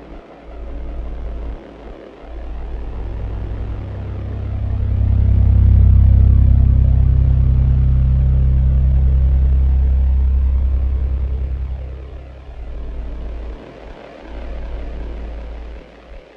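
Dark electronic track: a deep bass that cuts in and out every second or two, with a low drone of several held tones swelling in about four seconds in, loudest around six seconds, then fading away by about twelve seconds, over a faint hiss.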